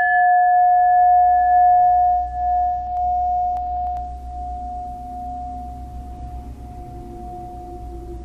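A struck bell ringing on in one long, clear tone with fainter higher overtones, slowly fading over a low steady hum.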